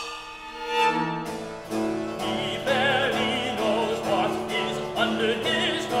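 Operatic instrumental passage led by bowed strings: a short falling phrase, then repeated sustained low notes with a high line in wide vibrato above. A singer comes in at the very end.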